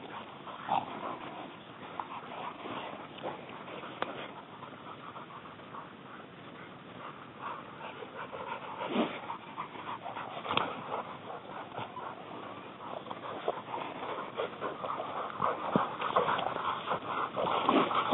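Catahoula hog dogs close by, panting and whining quietly as they move through brush, with soft rustling; the sounds grow busier towards the end.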